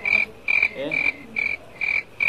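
A frog calling: a rapid, very regular series of short high notes, about two and a half a second, running steadily through the moment.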